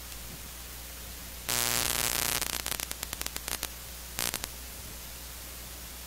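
Steady electrical hiss with a low mains hum, broken about a second and a half in by a loud burst of crackling static that breaks up into rapid crackles, and a second short crackling burst about four seconds in.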